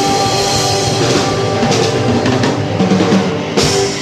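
Live rock band playing the closing bars of a song: a held chord over a run of drum hits, ending on one hard final hit about three and a half seconds in that then rings out.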